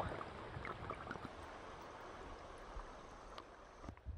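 Faint, even rush of shallow river current heard with the camera held underwater, with a few small clicks.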